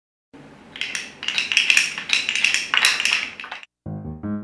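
Rapid clattering and clinking of small hard objects in several loud bunches. It cuts off suddenly near the end.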